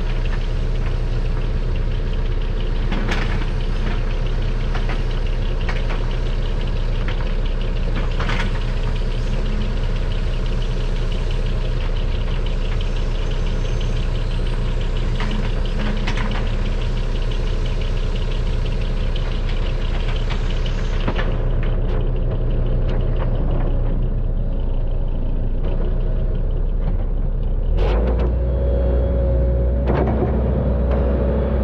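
Diesel engine of a tracked hydraulic excavator idling steadily, with a few short clunks. Near the end there is a sharp knock, and the engine note grows louder and deeper as the machine comes under load and the boom starts to move.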